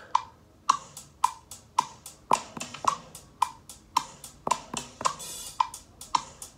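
GarageBand's metronome clicking steadily, a little under two clicks a second, with virtual drum-kit hits tapped out on an iPad touchscreen and played from its speaker. A cymbal wash comes about five seconds in.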